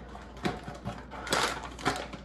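Groceries being handled: a few short knocks and clicks, with a burst of plastic rustling about a second and a half in.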